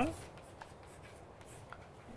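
Chalk writing on a blackboard: faint taps and scratches.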